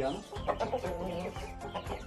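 Chickens clucking.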